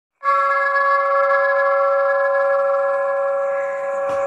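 A struck metal bell tone that starts abruptly and rings on steadily at an even level, with several clear overtones above a strong fundamental.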